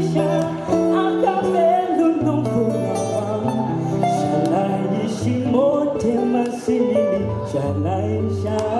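Live music: a man singing a slow pop ballad into a microphone over instrumental accompaniment, heard in a large hall.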